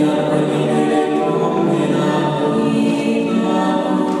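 A cappella vocal quartet of one male and three female voices singing together in close harmony, holding long notes in chords, with a new phrase beginning right at the start.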